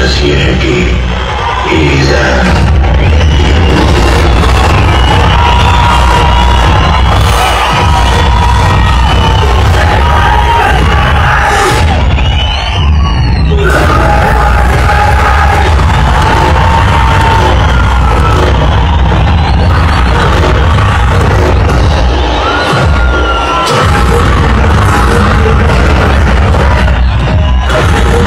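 Action-film teaser soundtrack of loud music and bangs playing over cinema speakers, heard through a phone recording, with the audience cheering over it.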